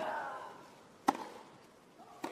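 Tennis rally on a grass court: a player's grunt trails off just after a shot at the start, then a sharp crack of racket strings on the ball about a second in.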